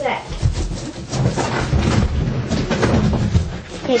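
Indistinct talking mixed with knocks, scrapes and thuds as a large cardboard box is handled and worked on.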